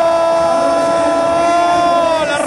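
A television football commentator's long, held "gooool" shout celebrating a goal: one steady note that sags slightly in pitch as it ends.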